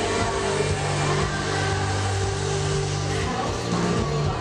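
A live rock band playing a song, with guitars, bass and drums, heard from within the crowd. The held bass notes change every second or two.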